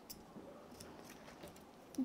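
Faint, light clicks and rustles of paper decoupage cut-outs being handled and positioned by hand on a cutting mat, a few small ticks spread through the moment.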